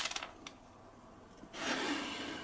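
A metal washer clinks down onto a walnut board and rattles briefly as it settles. About a second and a half in, the board is slid and turned on the wooden workbench, a rubbing scrape of wood on wood.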